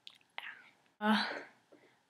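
Speech only: after a short pause, a young woman says a hesitant "yeah, uh".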